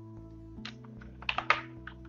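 Soft background music of steady held low tones, with a few sharp computer-key clicks about half a second in and again in a quick cluster around a second and a half.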